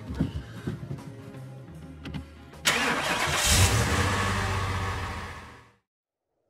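A car engine starts suddenly about two and a half seconds in, just after a couple of clicks, and runs loudly before fading out near the end.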